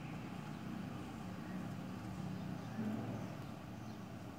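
Faint, steady low background rumble.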